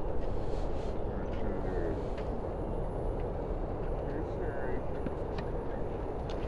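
Steady low outdoor rumble, like wind or distant traffic, with faint distant voices talking and a few faint sharp ticks.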